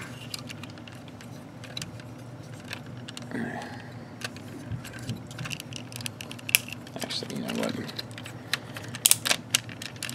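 Plastic parts of a TFC Phobus Divebomb transforming figure clicking and rattling as they are handled and pushed into place. There are scattered light clicks throughout and a louder run of clicks near the end.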